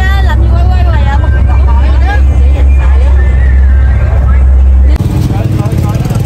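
Loud, steady low drone of a passenger boat's engine heard inside the cabin, with a voice over it. About five seconds in it cuts off abruptly to rougher open-air noise.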